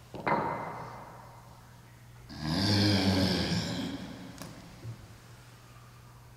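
A man's forceful breaths out in time with his dumbbell punching reps: a sharp one just after the start and a louder, longer, voiced one about two seconds later, over a steady low hum.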